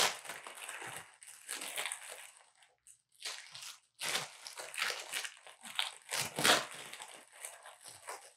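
Clear plastic packaging crinkling and rustling in fits and starts as it is torn open and worked off by hand, with a short pause about three seconds in.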